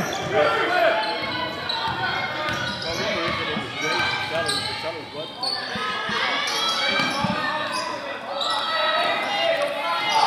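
Basketball bouncing on a hardwood gym floor during play, over the overlapping voices and shouts of players and crowd filling a large gymnasium.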